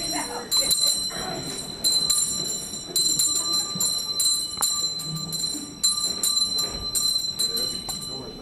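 A small handbell rung by hand in quick, irregular bursts of several strokes, its ring hanging on between them: a street bell-ringer's collection bell calling for donations to the pot.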